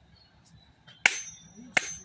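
Two sharp cracks, about two-thirds of a second apart, in the second half.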